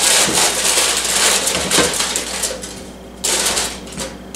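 Aluminium foil crinkling and rustling as it is handled while potatoes are placed into a foil pouch. It runs in irregular crackly bursts, eases off for a moment past the middle, and flares again near the end.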